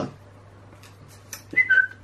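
A short two-note whistle about one and a half seconds in, the second note lower than the first, over a faint steady hum.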